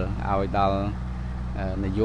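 A man speaking, over the steady low drone of a wheeled earthmoving machine's engine running in the background.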